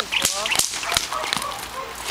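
Sharp whip cracks from a protection-training decoy, several in quick succession, two or three a second, as the Malinois charges in for the bite.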